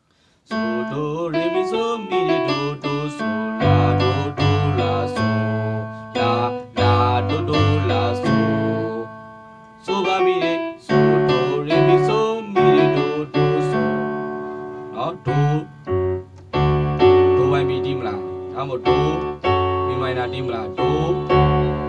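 Digital keyboard set to a grand piano voice, played with both hands: a melody and chords over left-hand bass notes. The notes die away briefly about halfway through, then the playing resumes.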